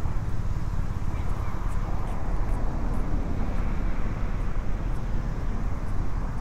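Steady rumble of city road traffic from a nearby avenue.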